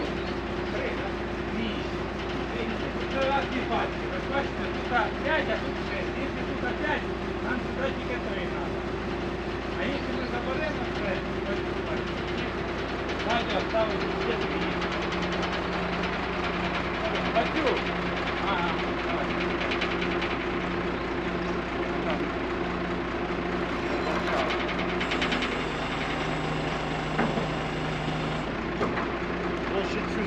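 Truck engine running to drive the hydraulics of its loader crane during unloading. It hums steadily, and its pitch drops about halfway through and again near the end.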